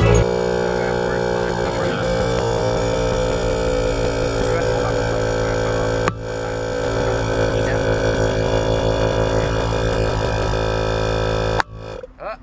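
Portable air compressor running with a steady buzzing drone as it inflates a Onewheel tire through a hose on the valve. It dips briefly about halfway and cuts off just before the end.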